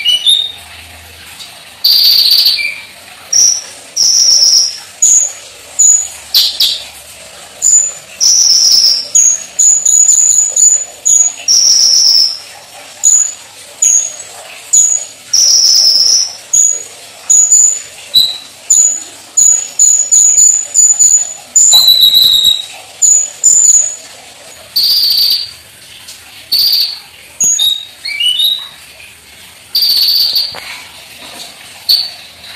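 A caged konin ('kolibri ninja') sunbird singing loudly: high-pitched chirps and short whistled notes in quick runs, broken by brief pauses.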